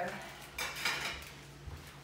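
Dishes and cutlery clattering as they are handled on a kitchen counter, loudest in a short rattle from about half a second to a second in, with a few lighter knocks after.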